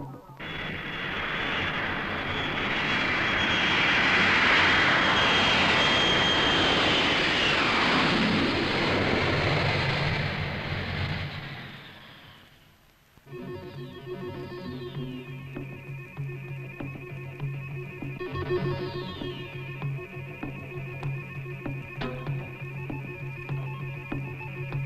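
A jet aircraft flying past: a loud roar with a high whine that falls in pitch as it goes by, dying away about twelve seconds in. About a second later, guitar-led music starts.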